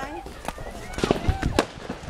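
Fireworks going off: a few sharp bangs and cracks, the loudest about one and a half seconds in.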